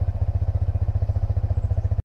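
An engine idling: a steady, low, rapid thrum that carries on unchanged.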